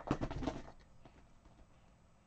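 Pen writing on a planner page: a quick run of short scratchy strokes in the first part, then fading to quiet.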